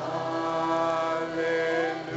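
Slow worship song with long held sung notes, the sung pitch changing about halfway through, over a quiet band accompaniment.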